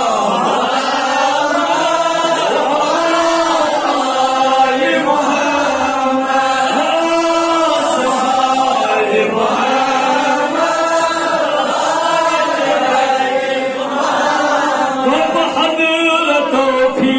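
A man chanting a religious melody in long held notes that rise and fall, with barely a pause.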